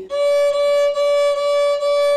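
A violin playing the note D, third finger on the A string, in several repeated bow strokes on the same steady pitch.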